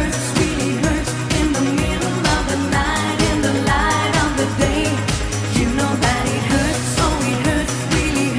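Pop song with a woman singing lead over a steady dance beat, from a live stage performance.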